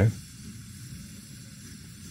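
Coleman 533 dual-fuel camping stove burning with a faint steady hiss from the burner, turned down to try for a simmer. The flame is burning yellow-orange, which the owner takes for a burn problem and a sign that the stove needs a service.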